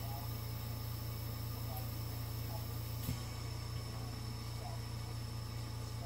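Steady low hum with faint hiss, the background tone of the recording, and one short click about halfway through.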